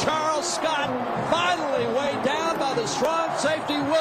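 A man's voice talking throughout, with faint crowd noise underneath.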